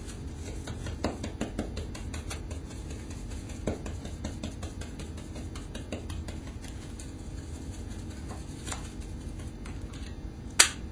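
Paint being applied through a wall stencil into a corner: light tapping and rubbing of the stencilling tool on the stencil and wall, with a quick run of small ticks in the first few seconds and scattered single taps after, over a steady low hum.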